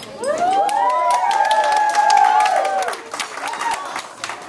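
A roomful of guests cheering and whooping with clapping, many voices at once; it dies away about three seconds in.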